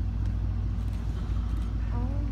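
Boat engine running with a steady low hum.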